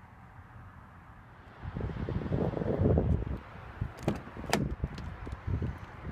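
Wind and handling rumble on the phone microphone for a couple of seconds, then two sharp clicks about four seconds in from a car's rear door latch and handle as the door is opened.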